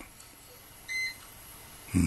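One short, high electronic beep about a second in, over faint room tone.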